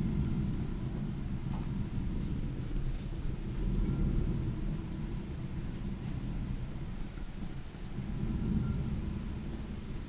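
Old wooden mill machinery running, a steady low rumble that swells and eases a few times.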